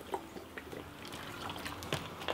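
A person drinking from a large plastic water bottle: faint sloshing of water in the bottle, with a few small clicks.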